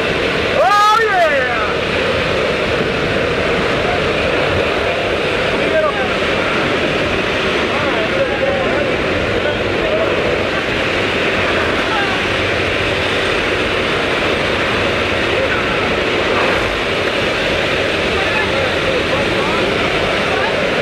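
Steady loud rush of wind and aircraft engine noise inside a small jump plane's cabin with the door open, with a brief louder burst about a second in and voices now and then faint under the noise.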